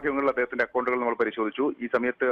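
Speech only: a news reporter's narration in Malayalam.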